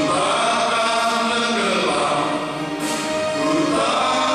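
Male vocal group singing a gospel song in several-part harmony through microphones, in long held notes whose chord shifts near the start and again about three seconds in.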